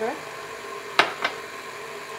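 KitchenAid stand mixer running on low with a steady hum, whipping egg whites and sugar. About halfway through there is a sharp click, then a fainter one just after.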